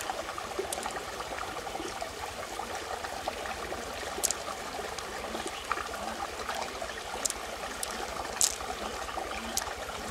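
Shallow stream water trickling steadily. A few sharp clicks sound over it as pearls are dropped into a handful of others and knock together.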